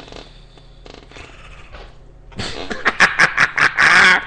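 A man laughing: a low hum of room tone for about two seconds, then a loud burst of rapid, breathy laughter pulses near the end.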